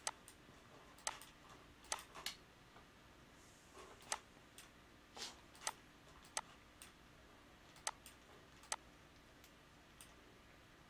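Faint computer mouse clicks at irregular intervals, about ten sharp clicks, some in quick pairs.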